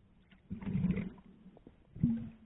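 Muffled underwater noise picked up by a submerged camera: a rush of sound lasting about half a second, starting about half a second in, and a second short one at the end.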